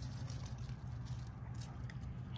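Steady low background hum, with faint crumbling and rustling of potting soil and roots as a freshly uprooted aloe is held up in the hand, a few light ticks near the end.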